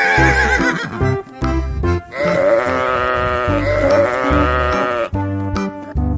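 A sheep bleating sound effect: one long, wavering bleat from about two seconds in to about five seconds, with the tail of an earlier bleat fading in the first second, over background music with a regular bass beat.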